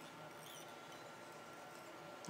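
Near silence: room tone, with a few faint high-pitched squeaks in the first half.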